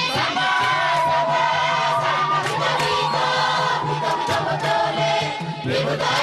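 A group of voices singing together in chorus, holding long notes.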